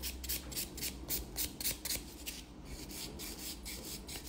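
Nail buffer block scrubbing back and forth over an acrylic-gel fingernail, a fast, even run of faint scratchy strokes, about five a second, with a brief pause about halfway through.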